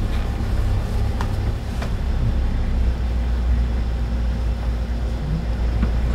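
Steady low engine and road hum inside the cab of a Kia manual light truck driving slowly, with a couple of faint clicks.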